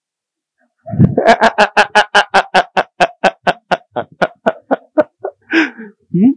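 Hearty laughter after a joke: after a brief silence, a run of short rhythmic 'ha' bursts, about five a second, that slows and fades over about four seconds.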